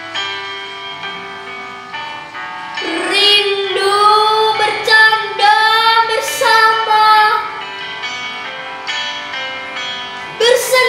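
A young girl singing over an instrumental backing track; after a stretch of accompaniment her voice comes in strongly about three seconds in with long, wavering held notes, then drops back near the end.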